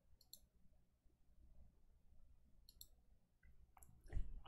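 Near silence with a few faint clicks at a computer: a pair about a third of a second in, another pair near three seconds, and one more just before the end.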